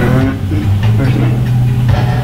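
Sound track of a fly-fishing video played through room speakers: a steady low hum that shifts in pitch, with brief snatches of a voice.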